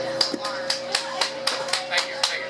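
A small audience clapping in a light, uneven patter of about four claps a second, applauding at the end of a song.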